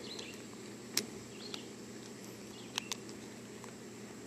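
A few faint, sharp clicks and taps of a phone's protective outer case being handled and snapped shut around the phone: one about a second in, a small one shortly after, and a quick pair near the end. Faint steady outdoor background noise runs underneath.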